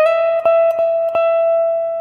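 Electric guitar with a clean tone playing a single high E at the 17th fret of the second string: the note is picked again three times in quick succession in the first second or so, and the last one rings on.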